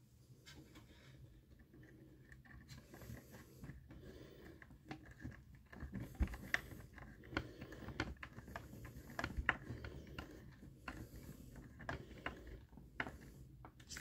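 Faint, irregular clicks and taps of a small screw being driven into a metal part with a screwdriver, along with the handling of hard plastic model parts.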